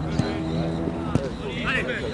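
Players' voices calling across a football pitch, with two sharp knocks about a second apart, the sound of the ball being kicked.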